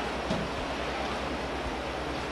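Steady background hiss with a low hum underneath and no distinct sound event: the recording's noise floor while nobody speaks.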